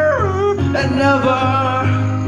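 A man singing karaoke into a corded microphone over a backing track. His voice slides down in pitch about a quarter-second in, then holds a few sustained notes.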